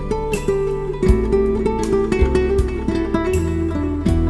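Instrumental music: acoustic guitar picking chords, with low held notes beneath that change about once a second.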